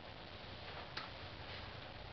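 Faint handling sounds as a hand reaches across a workbench and picks up a book, with one light click about a second in over low room tone and a steady low hum.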